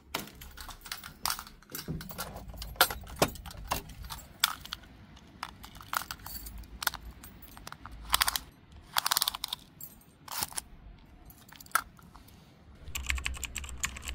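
Irregular sharp clicks, taps and rattles of things being handled: a door handle and hanging keys worked first, then a small pocket tape measure pulled out and let snap back. A low rumble lies under the clicks in places, thickest near the end.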